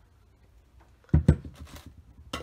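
Two sharp knocks close together about a second in, as small craft tools (a brush and rubber stamp beside a metal oil tin) are handled and set down on a work table, followed by a few fainter handling noises.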